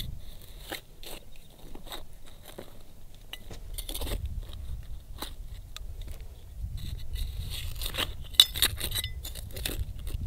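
A metal hand trowel digging into dry, stony soil: repeated short crunching scrapes as the blade cuts and scoops, busiest and loudest about eight seconds in.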